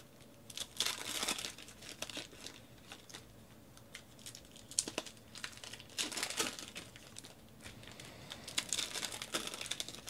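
Foil trading-card pack wrappers being torn open and crinkled by hand, with cards handled and tapped between the packs. The crinkling comes in bursts: about a second in, around six seconds, and again near the end.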